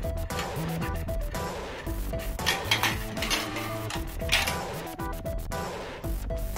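Background music over plastic marbles clattering through plastic marble-run track, with louder bursts of clatter around the middle and again about four seconds in.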